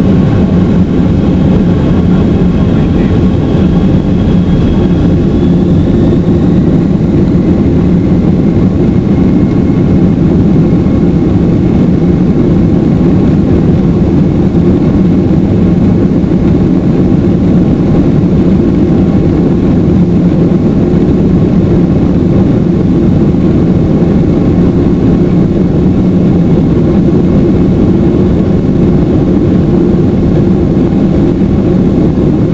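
Inside the cabin of a Boeing 767-300ER rolling on the ground: a loud, steady rumble of jet engines and wheels, heard from a window seat over the wing. A faint high whine rises in pitch over the first few seconds.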